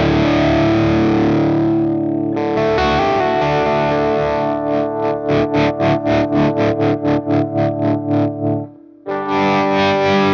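Electric guitar played through a Henry Amplification FSC 50 tube amp. A held chord rings and fades, then a run of quickly repeated picked notes comes in, about four a second. It stops abruptly for a moment before a new chord rings out near the end.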